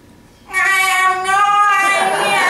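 A woman's voice wailing a long, loud, high sung note in a theatrical show of anguish, starting about half a second in and held steady.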